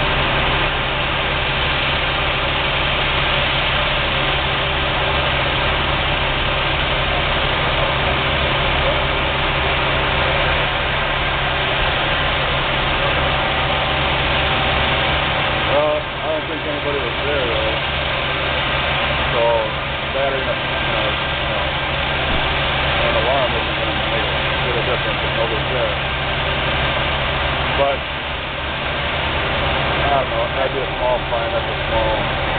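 Fire apparatus engines running steadily, a constant engine drone with several steady tones. From about halfway through, voices can be heard over it.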